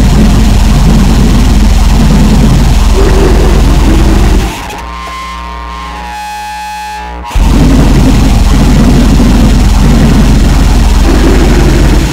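Harsh noise / gorenoise recording: a loud, dense wall of distorted noise with a heavy low end. About four and a half seconds in it drops to a quieter stretch of held, buzzing tones for about three seconds, then the noise wall comes back and cuts off abruptly at the end.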